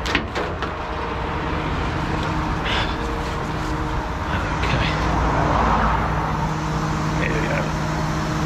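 Heavy recovery truck's diesel engine idling steadily, running to supply air to the casualty's airlines. A passing vehicle swells and fades about five to six seconds in.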